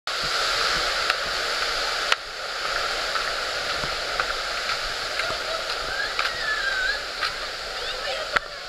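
Steady rushing of flowing river water, with a couple of sharp clicks in the first two seconds and a few faint chirping glides near the end.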